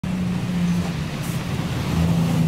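Minibus driving past on a dirt road, its engine giving a steady low hum.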